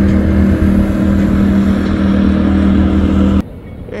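Outboard motor of a speeding bass boat running at a steady pitch, stopping abruptly near the end.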